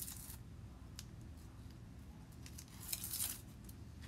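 Craft tape being peeled off a stencil transfer and crumpled by hand, in short faint rustling bursts near the start and again about three seconds in, with a few small clicks.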